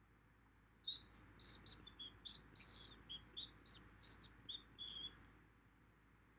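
A small bird singing: a quick, irregular run of short high chirps and twitters, starting about a second in and lasting about four seconds.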